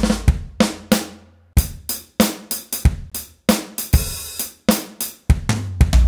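Roland FA-06 workstation's SuperNATURAL acoustic drum kit sounds, played from the keys: a boomy kick at the start, then snare and kick hits in an irregular groove, with hi-hat and a cymbal crash about four seconds in. Big, fat-sounding drums.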